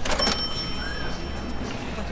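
A short metallic clatter followed by a bright bell ding that rings on for about a second and a half: a cash-register "ka-ching" chime over the payment, heard above a steady low outdoor rumble.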